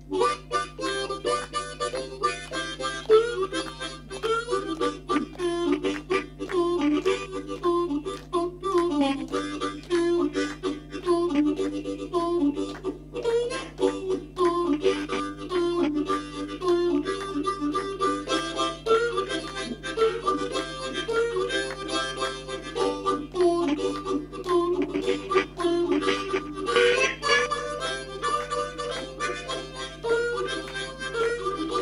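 Harmonica played solo, a continuous tune of quick, changing notes.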